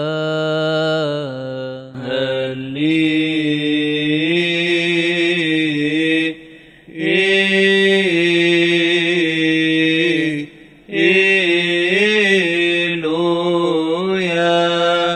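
A solo male voice chants a Coptic liturgical psalm in a long melismatic line, holding drawn-out vowels with wavering ornaments. It breaks for breath about six and a half and ten and a half seconds in.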